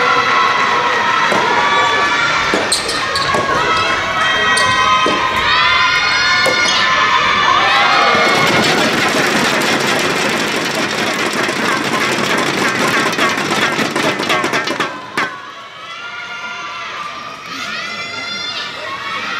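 Soft tennis rally in a gymnasium: repeated loud shouted calls from players and supporters over a few sharp racket hits on the ball. From about 8 s the point is won and a crowd claps and cheers densely. The noise cuts off suddenly near 15 s, and voices come back faintly near the end.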